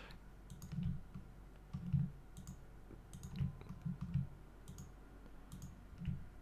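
Computer mouse clicking irregularly, a dozen or so light clicks, with soft low bumps in between.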